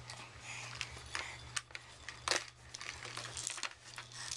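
A baby handling plastic and fabric toys: irregular clicks, clacks and crinkling rustles, the sharpest clack a little past the middle. A steady low hum runs underneath.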